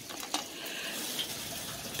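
Water running steadily in the background, a low even hiss, with a faint click about a third of a second in.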